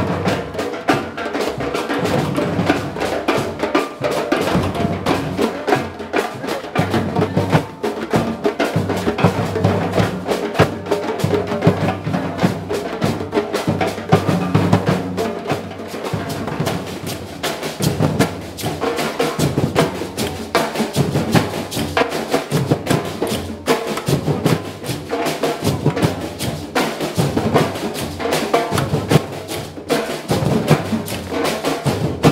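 Ensemble of large surdo bass drums and hand-struck drums playing together in a steady, dense rhythm, with deep repeated bass strokes under quicker strikes.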